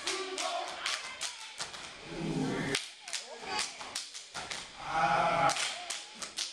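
Step team stomping and clapping on a stage floor, a fast run of sharp slaps and stomps. Shouted voices break in twice, about two seconds in and near five seconds.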